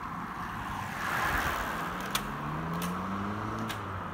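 Road traffic: a car's engine note rising steadily in pitch over the second half, over a steady road hum, with a brief rush about a second in as the time-trial bicycle passes close by. A few sharp clicks in the second half.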